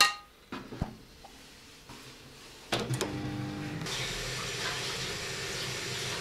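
The metal inner pot of a multicooker clinks against a ceramic bowl with a short ring, followed by a few light knocks, as the last of the borscht is poured out. From about three seconds in there is a steady hiss.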